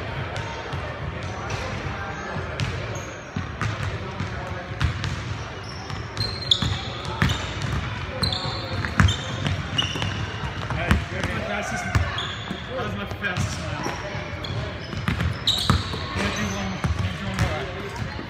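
Indoor pickup basketball: a basketball bouncing on a hardwood gym floor with repeated sharp knocks, sneakers squeaking in short high chirps, and players' voices calling out, all echoing in a large gym.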